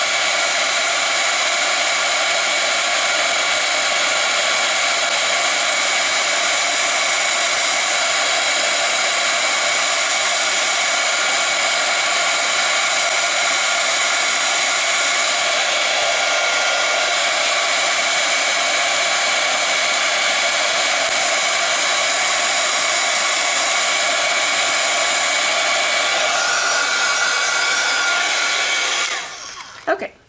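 Handheld embossing heat tool running, a steady hiss of blown air with a motor whine, used to heat stamped card panels; it is switched off near the end.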